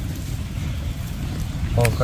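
A steady low rumble of wind buffeting the microphone, with a man's voice starting right at the end.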